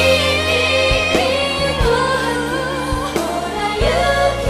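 A female vocalist sings long, held notes into a handheld microphone over a backing track of steady chords, as a live stage performance of a slow pop song.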